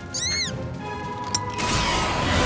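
A cartoon creature's single high squeak, rising then falling, over background music. About three quarters of the way through, a bright shimmering magic sound effect swells in.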